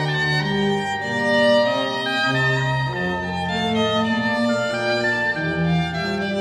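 Church instrumental music of violin with organ: a bowed melody moving note by note over sustained chords and held bass notes.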